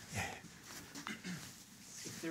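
Faint breathy vocal sounds from a man: a soft sigh near the start and a few low murmurs about a second in.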